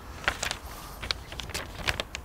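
A string of small, irregular clicks and rustles close to the microphone.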